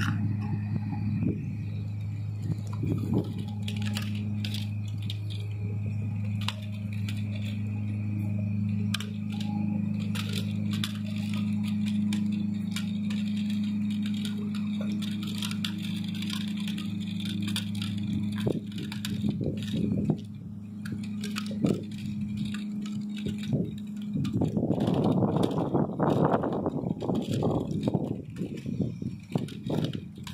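A steady low motor hum with a faint high whine, over scattered clicks and rattles. About 24 seconds in, a louder stretch of crunching noise lasts a few seconds.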